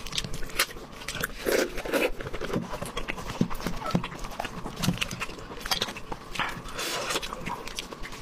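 Close-miked wet, sticky tearing of braised poultry in sauce pulled apart with gloved hands, mixed with chewing and lip smacks. It is a quick, irregular run of short clicks and squelches.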